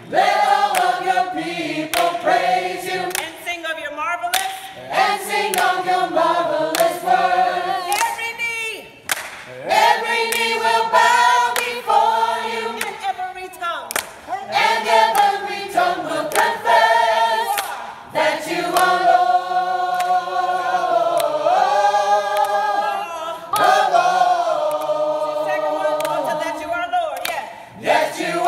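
Gospel choir singing in harmony, several voice parts moving together in phrases, with longer held chords toward the end.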